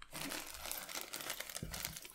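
Thin plastic packaging crinkling as a small keychain is unwrapped by hand, a continuous crackle of fine clicks, with a soft knock near the end.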